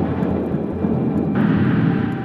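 A loud, steady rumble-like swell within the background soundtrack, with a brighter hiss joining about one and a half seconds in.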